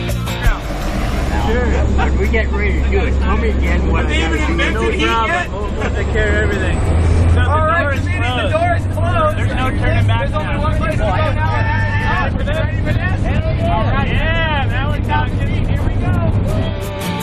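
The piston engine of a small jump plane drones steadily, heard from inside the cabin, under voices and background music.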